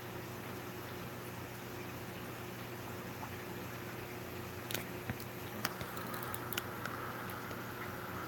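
Steady low hum and hiss of running aquarium equipment, such as a sponge filter and air pump, with a few faint clicks about halfway through.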